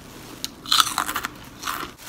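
Short, irregular crunching and crinkling sounds of an item or its packaging being handled, starting about half a second in.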